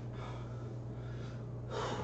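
A man breathing hard between leg exercises, with one short, sharp breath out near the end as he sits down on a chair. A steady low hum runs underneath.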